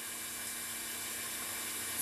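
Electric stand mixer running steadily, its whisk beating eggs and sugar for a sponge mixture in a glass bowl: an even whir with a faint steady hum.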